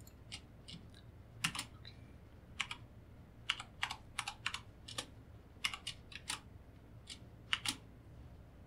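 Computer keyboard keystrokes, irregular and sometimes in quick runs of two or three, as Blender shortcuts are typed to duplicate, move and scale objects. A faint low hum sits underneath.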